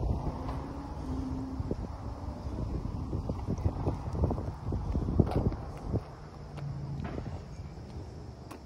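Footsteps on asphalt and phone handling knocks at an irregular pace, with wind rumbling on the microphone.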